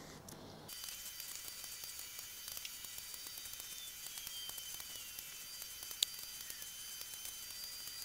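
Faint steady high-pitched hiss, with a faint falling whistle in the middle and one sharp click about six seconds in.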